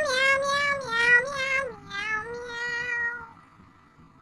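A domestic cat's long drawn-out meow lasting about three seconds, its pitch stepping down twice before it fades out.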